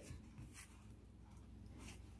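Near silence: a faint rustle of the glue-stiffened fabric hat being handled and pulled off its form, over a steady low hum.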